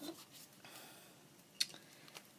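A single sharp click about one and a half seconds in, from a handheld plier-type hole punch squeezed shut on a piece of soft felt; otherwise faint room sound.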